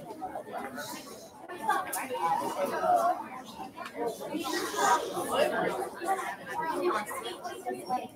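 Indistinct chatter of many voices, the seated children among them, talking over one another with no clear words.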